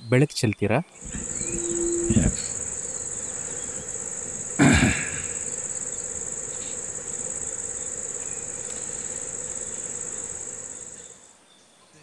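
Night insects chirring in one steady, high-pitched drone that fades out near the end. A short voice sound breaks in about five seconds in.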